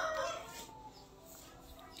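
The tail of a long drawn-out bird call that fades away in the first half second, then a quiet background.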